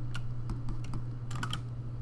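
Scattered clicks of computer keyboard keys and mouse buttons, a few at a time with short gaps, over a steady low hum.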